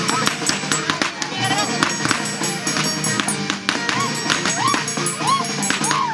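Andean string band of violins and harp playing a lively negritos dance tune. Sharp clicks and short rising-and-falling shouts sound over the music.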